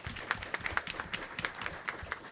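Audience applause of scattered, individually distinct hand claps from a modest number of people.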